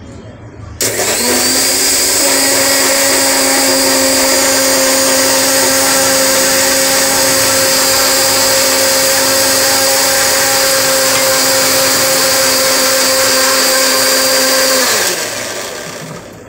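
Electric mixer grinder (mixie) with a steel jar blending a banana milkshake. The motor starts suddenly about a second in and runs at a steady high speed. Near the end it is switched off and winds down, its hum falling in pitch.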